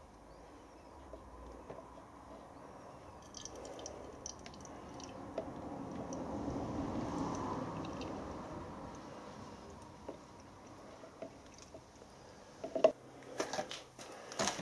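Warm water poured through a small funnel into the boiler of a Mamod toy steam roller. The soft pouring swells over a few seconds, is loudest in the middle and fades away. A few light clicks come near the end.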